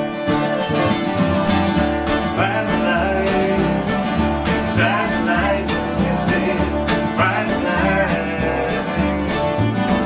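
Acoustic string band playing a country/bluegrass-style tune: two strummed acoustic guitars, a fiddle playing a wavering melody line, and an upright bass plucking steady low notes.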